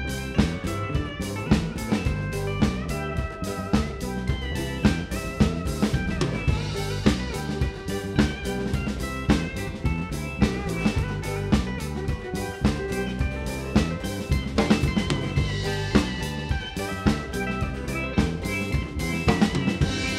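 Live band playing an instrumental passage with no vocals: drum kit with snare rimshots and bass drum keeping a steady beat under steel pan, guitars and keyboard.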